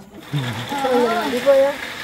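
A woman's voice talking to a toddler in a rising and falling tone, loudest about three quarters of the way through, over a steady hiss-like noise that comes in just after the start.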